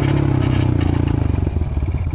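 Dirt bike engine running while being ridden, its pitch sinking slightly over the first second and a half as it comes off the throttle, with separate firing pulses audible near the end.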